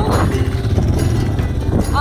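A farm motorbike's engine running steadily at low speed with background music over it.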